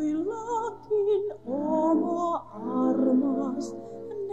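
A song: voices singing long held notes that glide from pitch to pitch over a musical accompaniment.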